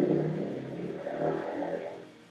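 A motor vehicle's engine going by, swelling and then fading away, picked up over a video-call microphone.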